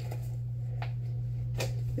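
Steady low hum of room tone, with two brief faint crinkles of a latex glove being handled, one a little under a second in and one about a second and a half in.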